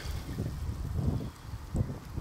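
Wind buffeting the microphone in low, irregular rumbles.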